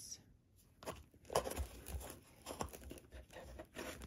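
Paper cash envelopes rustling and flicking as fingers leaf through a tightly packed box of them and pull one out: irregular soft rustles and scrapes, busier from about a second in.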